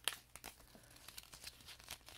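Paper yarn label being unfolded and handled in the fingers, crinkling in a run of faint, irregular crackles, with a sharper crackle right at the start.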